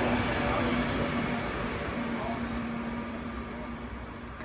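SBB ETR 610 high-speed electric train running along a station platform: a steady rumbling hum with a faint whine in it, slowly fading away.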